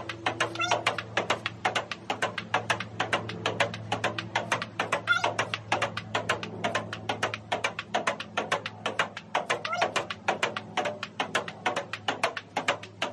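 Ping-pong ball being hit by a paddle and bouncing back off the upright half of a table-tennis table folded into playback position, in a quick, steady run of sharp clicks, about five a second, as a long unbroken rally.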